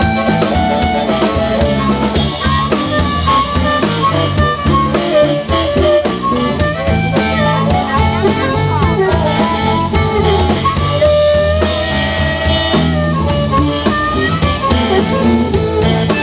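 Live blues band: a harmonica solo cupped against a vocal microphone, with bending and sliding notes, over electric bass and a drum kit.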